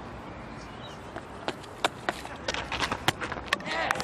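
On-field sounds of a cricket match during a spin bowler's delivery: a steady ground background with a run of sharp, irregular taps and clicks from about a second and a half in, and faint calls from the field near the end.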